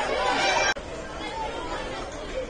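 Indistinct people talking, close and fairly loud at first, cut off abruptly with a click about 0.7 s in, then fainter background chatter.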